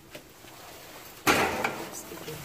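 A hotel-room window and its shade being handled: a sudden loud knock just over a second in, trailing off over about half a second.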